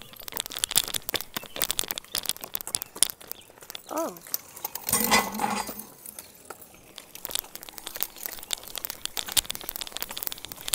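Irregular crackling and clicking on a handheld phone's microphone as it is carried along a concrete sidewalk behind a child riding a hoverboard with a kick scooter. There is a brief louder rustle about five seconds in, and a short 'oh' about four seconds in.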